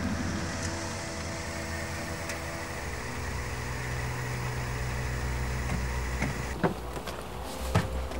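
A car running steadily, with engine hum and road noise, followed by two sharp clicks near the end.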